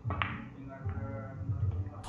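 Pool balls clicking as the cue ball strikes the object ball, a sharp click shortly after the start, followed by a faint tick later, over steady background music.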